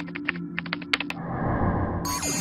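Produced intro sound effect: a quick run of a dozen or so sharp clicks, like keyboard typing, in the first second, then a soft rushing noise, over a low steady music drone.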